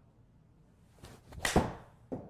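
A golf swing with a Ping i210 7-iron: a short rising whoosh of the club, then a sharp, loud strike as the iron hits the ball about one and a half seconds in.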